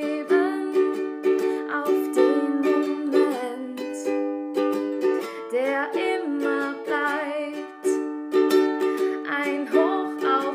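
Ukulele music: chords strummed in a steady rhythm, with a wavering melody line above them.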